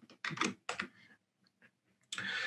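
Typing on a computer keyboard: a short run of keystrokes in the first second, then a few faint taps.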